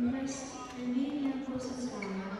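A person's voice, drawn out and wavering in pitch, carrying in a large sports hall.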